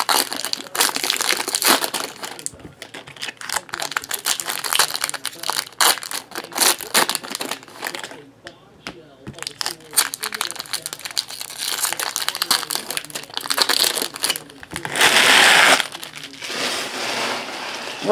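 Foil trading-card pack wrappers crinkling and rustling as they are handled and opened by hand, an irregular crackle, with a louder stretch of crinkling about three quarters of the way through.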